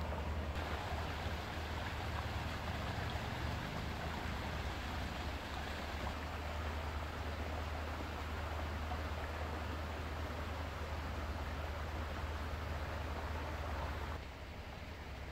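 Shallow brook running over a stony bed, a steady rush of water, with a steady low rumble underneath.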